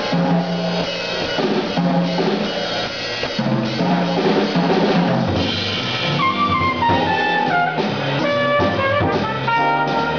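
Live small-group jazz: a drum kit with cymbals keeping time under low upright bass notes, with a brass horn coming in with a melodic line about six seconds in.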